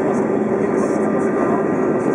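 Steady cabin noise of a jet airliner in flight on approach: an even rush with a constant hum beneath it.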